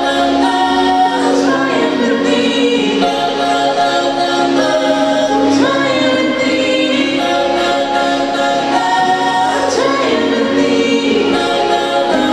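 A woman singing karaoke into a microphone over a pop backing track, with long held notes.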